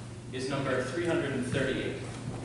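A man speaking; the words are not made out. A steady low hum runs underneath.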